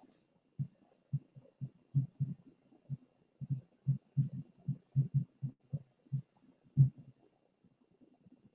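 Garbled voice on a video call breaking up: only irregular, muffled low thumps at about the pace of syllables come through, with the words lost.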